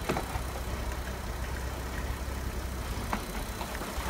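2008 VW Golf R32's 3.2-litre V6 engine idling steadily.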